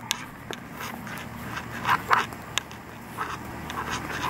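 Rustling and soft clicks from a handheld camera being moved about, over a low steady rumble, with a short burst of rustling about two seconds in.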